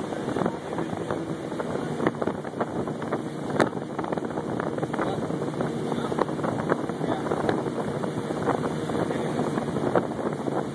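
Motorboat running steadily at speed, with water rushing past the hull and wind buffeting the microphone. A sharp knock about three and a half seconds in.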